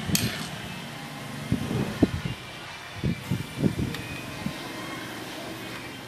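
A metal ladle scooping thick soup from an aluminium pot and pouring it into ceramic bowls, with soft irregular knocks as ladle and bowls touch pot and steel tray, over a steady low background hum.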